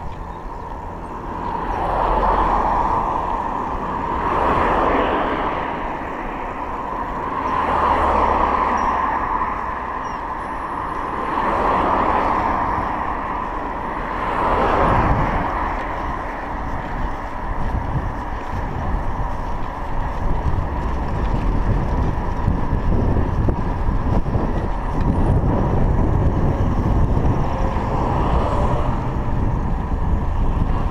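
Road traffic heard from a moving bicycle: vehicles swell past one after another every three seconds or so during the first half, then a steadier low rumble of wind buffeting the microphone mixes with traffic.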